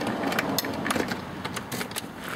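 Folding camping table (the 1998 Honda CR-V's spare-tire-lid table) being unfolded: its tubular metal legs swing out and lock against the plastic top with a few irregular clicks and knocks, a cluster near the middle and more near the end.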